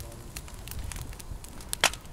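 Wood campfire crackling, with scattered sharp pops; the loudest pop comes just before the end.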